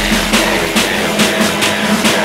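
Dubstep track: the heavy sub-bass fades away about a second in, leaving a steady beat of sharp, evenly spaced percussion hits over a pulsing low tone.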